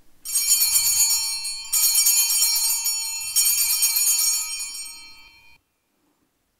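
Altar bells (Sanctus bells) rung three times, a cluster of small bells jingling bright and high with each shake, marking the elevation of the consecrated host. The last ringing stops short near the end.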